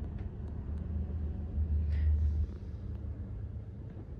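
Low, uneven rumble of a hand-held camera microphone being moved as it pans around, swelling for about a second near the middle, with a few faint clicks.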